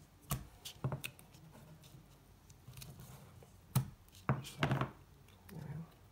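Hands handling a cardstock pop-up piece and a roll of tape: scattered short taps and rustles, a few near the start and a busier cluster about four to five seconds in, as tape is pulled off and pressed onto the paper.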